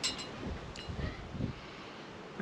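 Light wind on the microphone outdoors: a faint, even hiss with a few soft low buffets.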